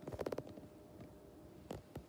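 Faint handling noise: a quick run of soft clicks and rustles in the first half second, then two more single clicks near the end.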